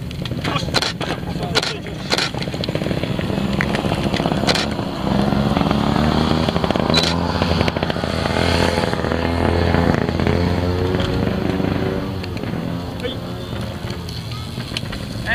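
Trials motorcycle engine running, coming in louder about five seconds in and holding a slightly wavering pitch for several seconds before easing off near the end. A few sharp knocks come in the first seconds.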